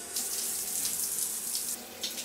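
Shower head spraying water onto a person's head, a steady hiss of falling water that eases slightly near the end.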